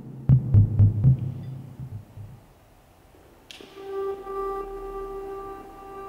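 Music from a song split into four separate tracks, its mix crossfading with the player's position. A few low beats in the first second fade away to a quiet stretch. A held, pitched note with overtones then comes in sharply about three and a half seconds in.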